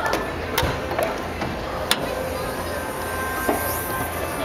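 Hood latch of a Toyota Sequoia being released and the hood raised: two sharp metallic clicks about a second and a half apart.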